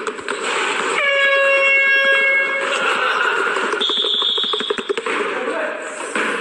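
A steady, buzzy horn-like tone lasts about a second and a half, starting about a second in. About four seconds in a short high beep follows, with some clicking, over background voices.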